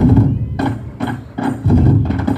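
An ensemble of bedug, the large Indonesian mosque barrel drums, beaten in a fast rhythmic pattern of deep, sharp strikes several times a second.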